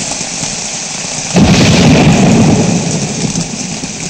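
Heavy rain falling, then a sudden loud thunderclap about a second and a half in that rumbles and slowly fades.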